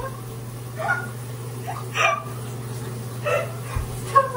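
A woman giggling in three short bursts over a steady low hum.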